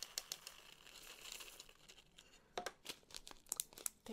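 Quiet crinkling of a small plastic zip baggie as square diamond painting drills are poured into it from a plastic tray, with a quick run of light clicks at first, then a few sharp separate clicks near the end as the bag is handled.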